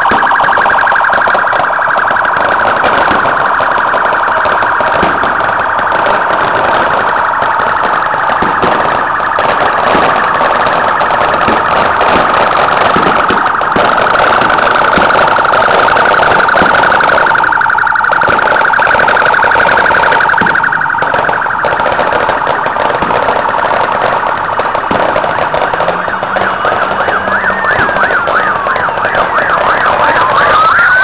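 Police car sirens running loud and continuously in a fast warbling yelp; in the last few seconds a slower wailing siren sweeping up and down joins in.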